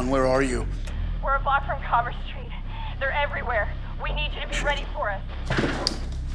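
Mostly speech: a man talking into a walkie-talkie in short spells, over a low steady hum. A sudden noisy burst comes near the end.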